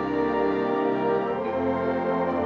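Concert band of woodwinds and brass playing held, sustained chords, with the harmony shifting to a new chord about a second and a half in.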